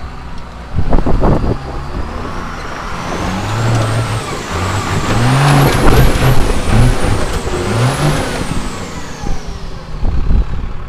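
Cummins 6BT turbo-diesel in a lifted Chevy squarebody crawling up a rocky climb, revving in short bursts, with a high turbo whistle that climbs and wavers with the revs and falls away near the end. Two loud knocks about a second in.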